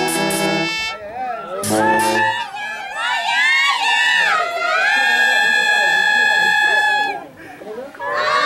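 A brass band plays a held chord that breaks off just under a second in, then a second short chord. From about three seconds a single high voice sings one long wavering note for about four seconds.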